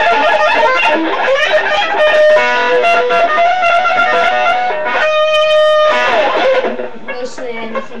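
Electric guitar playing a fast lead line of quickly changing notes, with one note held for about a second near the middle and bent notes near the end.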